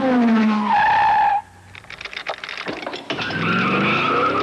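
Car sound effects: an engine note falling in pitch, then a short tire squeal about a second in, followed by rapid clicking and a whirring engine-like tone near the end.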